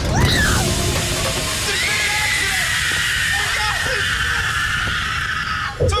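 A woman screaming and crying out in pain after slipping and being scalded by a pot of boiling water, starting with the crash of the fall, over a loud continuous rushing noise and low rumble; a long high wail is held from about two seconds in until it breaks off near the end.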